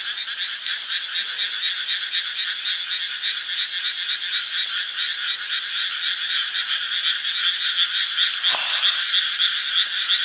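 A chorus of many frogs calling together from the rice paddies, their rapid croaks overlapping into a continuous pulsing din.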